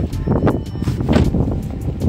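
Wind buffeting the phone's microphone in an uneven low rumble, mixed with handling noise as the camera is carried along.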